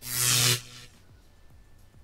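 iMovie's built-in 'Electricity' sound effect: a loud electric buzz with a hiss over it, lasting about half a second and then dying away.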